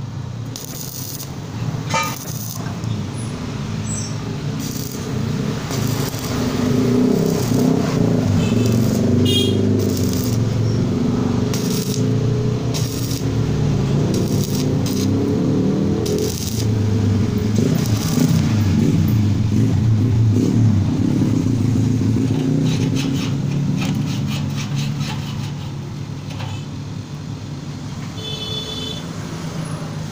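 Arc welding with a stick electrode on steel: the arc crackles and sizzles over a steady low hum. It grows louder a few seconds in and eases off near the end.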